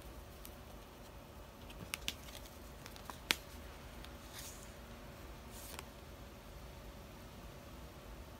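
Faint handling of a photocard and the clear plastic sleeve pages of a ring binder: a few small clicks and taps, the sharpest just over three seconds in, and soft swishes of plastic around four and a half and six seconds in.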